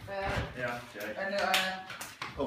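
Indistinct voices of several people talking in a room, with a couple of light taps.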